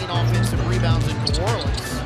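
Basketball being dribbled on a hardwood court, over background music with a steady bass line.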